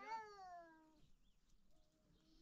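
A single high, wailing cry that glides down in pitch over about a second and then fades.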